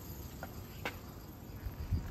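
Quiet outdoor street ambience with a steady high-pitched insect-like buzz. Two short faint clicks come about half a second and just under a second in, and low thumps come near the end.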